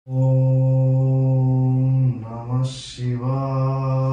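A man's voice chanting a mantra in long, steadily held tones: one long phrase, a short hiss, then a second held phrase.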